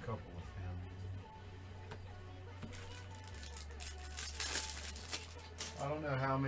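Trading cards being handled, with a run of rustling and sliding noises in the second half, over background music with a steady low bass line.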